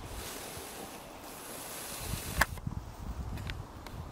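Wind hiss and rumble on the microphone, with one sharp knock about two and a half seconds in and two fainter clicks near the end.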